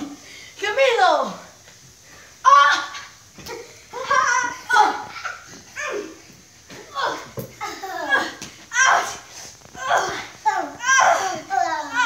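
Children's voices in repeated short shouts and squeals, some sliding in pitch.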